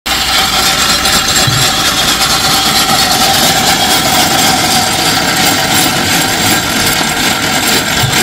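Sawmill saw and machinery running: a loud, steady noise with a steady whine.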